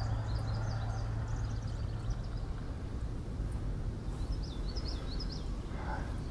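Outdoor ambience of low, steady wind rumble on the microphone, with faint bird chirps: a short run near the start and another about four seconds in.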